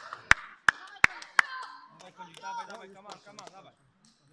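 Table tennis rally: the ball clicking sharply off the paddles and table in an even rhythm, nearly three hits a second, stopping about a second and a half in. Voices follow.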